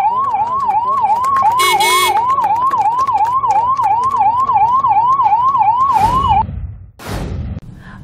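Ambulance electronic siren in yelp mode: rapid rising sweeps, about three a second, with a brief break and a short buzzy blast a second or two in. The siren cuts off about six seconds in.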